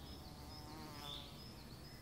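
A flying insect buzzing briefly past, about half a second in and gone before the last half-second, over quiet woodland ambience with a few faint high chirps.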